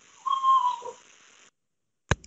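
A short whistle-like tone, held steady for about half a second and dipping slightly at its end, comes through the call audio. The sound then cuts out to dead silence.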